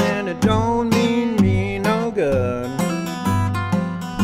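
Acoustic guitar fingerpicked in an old-time blues style: regular plucked bass notes under a picked melody, with one note gliding down in pitch about two seconds in.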